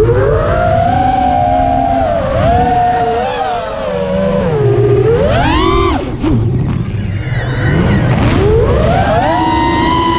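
Racing quadcopter's brushless 2205 2450kv motors whining, the pitch rising and falling with the throttle. The whine climbs steeply to a high pitch about five seconds in, drops sharply near six seconds, and climbs again from about eight seconds, with wind rumble on the onboard microphone.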